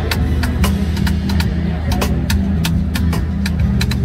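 Drum line of snare drums playing a sharp, crisp clicking pattern, about four to five quick strokes a second, over a steady low hum.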